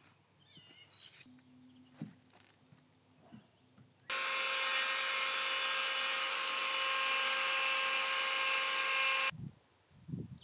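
Chainsaw running at a steady, high pitch for about five seconds as it cuts into a log, starting and stopping abruptly. Before it, a few faint wooden knocks.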